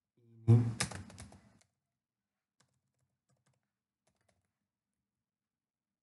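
Computer keyboard typing: a loud cluster of keystrokes with a brief voice sound at the start, then a few faint, scattered key taps.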